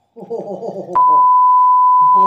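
A loud, steady single-pitch test-tone bleep cuts in about a second in and holds unchanged, edited in over the picture of a colour-bars test card.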